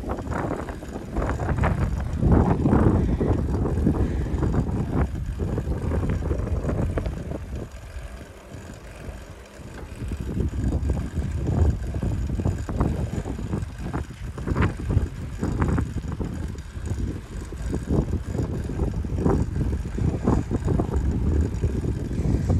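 Wind buffeting a microphone mounted on a moving bicycle, mixed with the tyres rolling on an asphalt road; the rumble comes in uneven gusts and eases off for a couple of seconds partway through.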